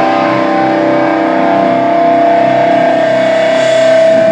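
Loud distorted electric guitar through an amp stack, a chord held and ringing steadily with no drum hits.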